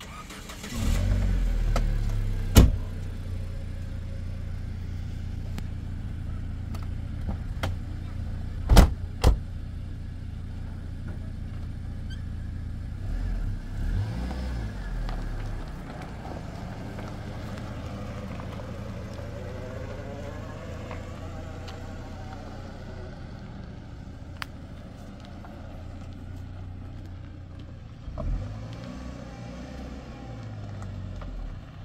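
A car engine starts about a second in and then runs steadily. A few sharp knocks sound over it.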